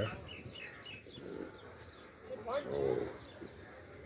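Faint bird chirps, several short calls in the first second or so.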